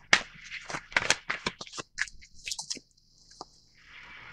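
Tarot deck being shuffled and handled: a quick, irregular run of sharp card clicks and slaps for the first three seconds or so, then a single click after a short pause.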